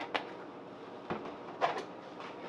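A metal spoon knocking lightly against a stainless steel saucepan three times while stirring mashed potatoes.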